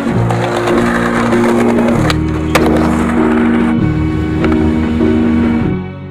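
Skateboard wheels rolling on concrete and two sharp board clacks about two seconds in, under background music with long held notes that fades out at the end.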